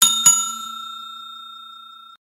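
Notification-bell sound effect: a bell-like ding struck twice, about a quarter second apart, then ringing on in a steady tone that slowly fades.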